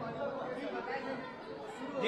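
Low background chatter of several people talking at once.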